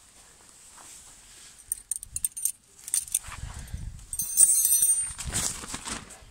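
Metal tent pegs clinking and jangling as they are picked out and handled, a few scattered clicks first, then a longer bright metallic rattle about four seconds in.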